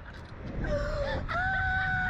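A woman's high, sustained scream on a slingshot thrill ride: a short held cry, then a longer one of about a second that drops in pitch as it ends. Wind buffets the microphone underneath.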